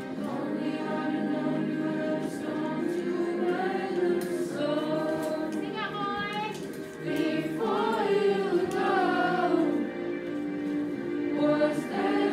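A student choir singing a pop song along with a karaoke backing track, the voices holding and gliding through sustained sung phrases.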